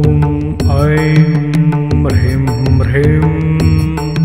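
Devotional mantra music: a sung chant in long held notes over a steady low drone, with a regular beat of light percussion strikes.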